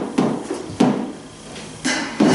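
Hollow plastic toddler slide knocking and clattering as it is lifted and set down, a few sharp knocks spread over two seconds.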